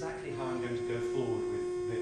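Music played back over room loudspeakers, dominated by a steady held note that drops slightly in pitch early on, with fainter notes around it.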